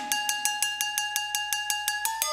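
Breakdown in a live electronic band's music: the bass and kick drop out, leaving fast, even percussion ticks, about seven or eight a second, over a held high synth note.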